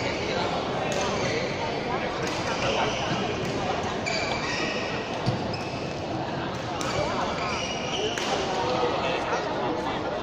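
Badminton rally in a large echoing hall: sharp racket strikes on the shuttlecock every second or two. Voices carry on in the background throughout.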